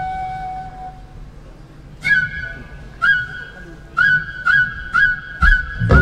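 Live stage music: a high wind instrument holds a note that fades out. About two seconds in, it plays short sharply attacked notes on a single pitch, a second apart at first, then quickening to about two a second. The full band comes in just at the end.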